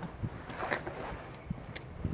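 Wind buffeting the microphone, an uneven low rumble, with a few faint short rustles or clicks.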